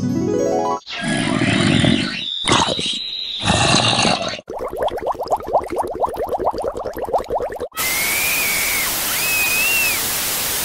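Edited-in music and sound effects in quick succession. A falling tone ends just under a second in, then come short noisy bursts with a high steady whistle, about three seconds of a fast rattle, and from about eight seconds a steady hiss with short whistling tones that rise and fall.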